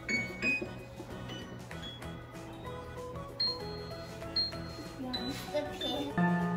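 Lagrima digital piano played by two children: separate notes struck one after another, each ringing and fading, with a few high notes repeated around the middle.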